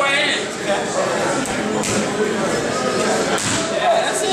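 Boxing-gym sounds: a few sharp slaps and thuds of punches landing, over a steady murmur of background voices.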